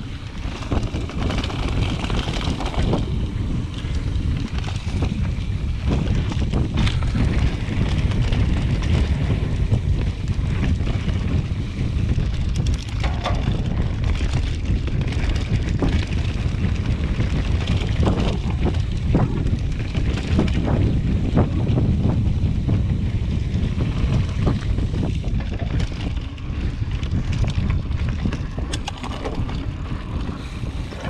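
Mountain bike rolling fast down a dirt and leaf-covered trail: heavy wind buffeting on the camera's microphone over the rumble of knobby tyres, with scattered clicks and rattles from the bike over bumps.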